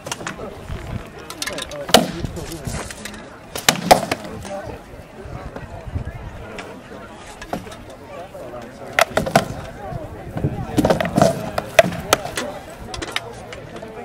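Rattan swords striking shields and armour in SCA armoured combat: sharp thwacks and clatters coming in several irregular flurries, with spectators' voices in between.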